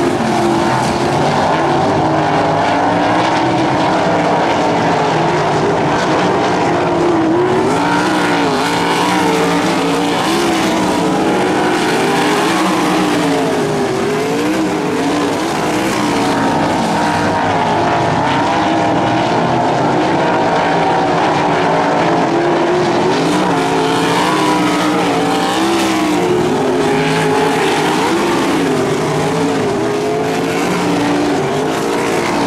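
Several winged sprint cars' V8 engines running at once in a race, their pitch rising and falling as the drivers lift and get back on the throttle through the turns.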